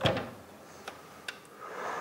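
Clicks and light knocks of an electric meat grinder being handled while its switch and power cord are worked to start it, with no motor running yet: a sharp click at the start, then a few faint ticks. A soft rushing noise swells near the end.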